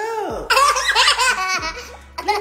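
A toddler girl laughing, high-pitched and loud: a short rising-and-falling squeal, then a rapid string of laughs from about half a second in that stops shortly before the end.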